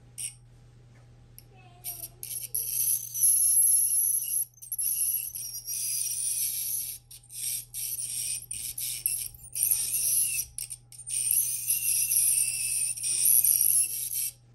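Electric ultrasonic plaque remover running on its low setting, its metal scaler tip buzzing against the teeth. The buzz is high-pitched and comes in stretches from about two seconds in, breaking off briefly several times as the tip touches and leaves the teeth.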